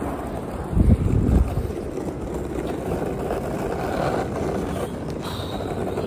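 Longboard wheels rolling fast down an asphalt hill: a steady rumble, with wind on the microphone and a louder low burst of wind about a second in.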